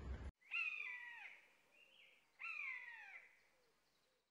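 An animal calling twice, about two seconds apart: each call is high-pitched and falls in pitch over less than a second.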